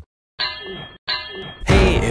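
Two short ringing metallic clangs, one after the other, as a sound effect in the intro of a hip-hop track. About a second and a half in, the full beat kicks in.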